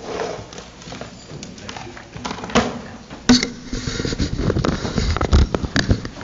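Irregular knocks and rustling picked up close to a podium microphone: handling noise as the microphone and podium are touched, getting busier toward the end.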